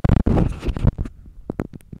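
Microphone rubbing and handling noise: low rumbling scrapes for about the first second, then a few short clicks.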